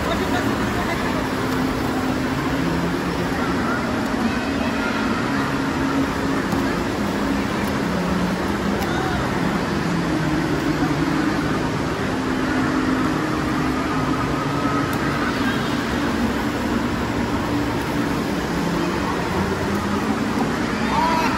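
Crowd noise in an indoor water-park pool: many voices chattering and calling over steady splashing and the wash of water.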